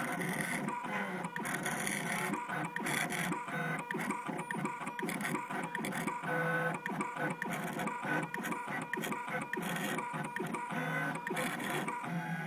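Gravograph IM4 rotary engraving machine at work cutting a design into an anodized aluminum tag. Its drive motors give a busy, rapidly stuttering whir whose pitch keeps stepping up and down as the cutter head changes direction.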